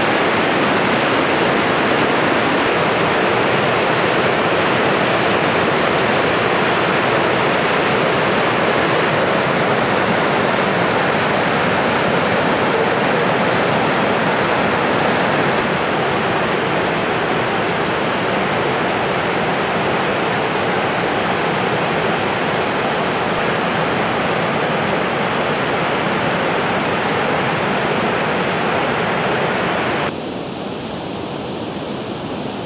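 White River Falls, a large waterfall, pouring: a loud, steady, even rush of falling water. About halfway through it becomes slightly quieter and duller.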